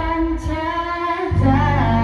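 A woman singing a Malay pop ballad into a karaoke microphone, her voice amplified over a karaoke backing track; a low bass part of the track comes in about a second and a half in.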